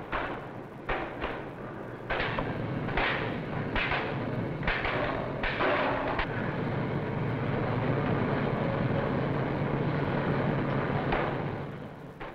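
Heavy hammer blows on red-hot steel ship's ribs, struck at an irregular pace over a steady shipyard din. About halfway through the blows stop and a steady machine hum carries on, fading out near the end.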